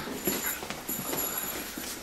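A pause in the speech filled with room noise and a few light clicks and knocks, with a faint high steady whine coming in partway through.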